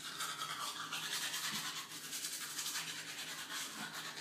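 Manual toothbrush scrubbing teeth in rapid, rhythmic back-and-forth strokes.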